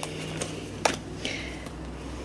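Round tarot cards being handled and laid down on a wooden table: a few sharp taps and snaps in the first second, then a brief card swish.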